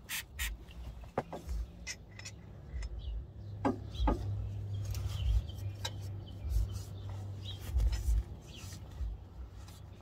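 Rag rubbing and scrubbing on the oily engine block as it is wiped clean with brake cleaner, with scattered small clicks and knocks from handling.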